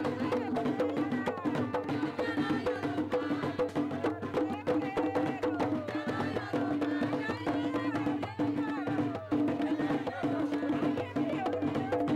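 Panamanian tamborito played live: hand drums and sharp rhythmic strikes, likely clapping, keep a steady beat under voices singing.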